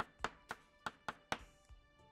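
Chalk tapping and scraping on a blackboard as a word is written by hand, a series of about six sharp taps, with faint background music.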